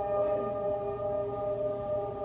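Ambient music: a sustained drone chord of several steady tones held through effects, with faint gliding pitches underneath.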